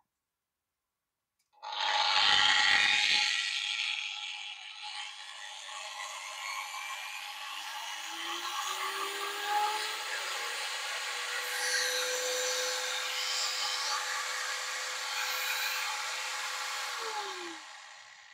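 Sparky M850E 850 W variable-speed angle grinder switched on about a second and a half in, loudest as it spins up, then running without load. Its whine rises in pitch through the middle as the speed goes up, and it is switched off near the end and winds down.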